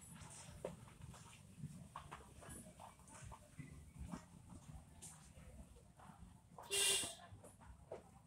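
One short, loud animal call about seven seconds in, over faint rustling and scraping of soil as hands work the dirt.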